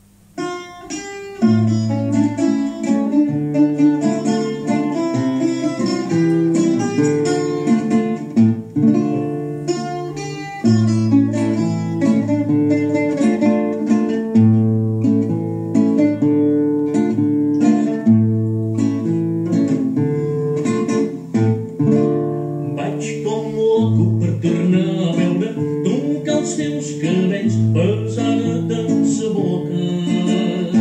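A classical guitar and a llaüt (Spanish lute) play a habanera together as plucked-string accompaniment and melody, coming in about a second and a half in.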